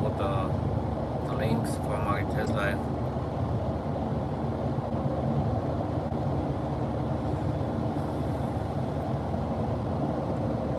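Steady road and engine noise heard inside a car cruising at motorway speed, a low even rumble with no change in pace. A person's voice is briefly heard in the first few seconds.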